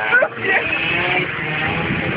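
A car driving, its engine and road noise running steadily, with a voice briefly over it at the start.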